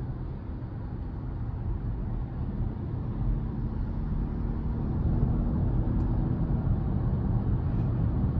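Cabin sound of a 2023 Hyundai Tucson N Line's 2.5-litre four-cylinder engine pulling away in sport mode. Engine and road noise grow gradually louder as the SUV picks up speed.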